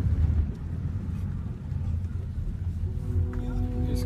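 Low road and engine rumble inside a moving car's cabin. Near the end a steady humming tone with overtones comes in over it.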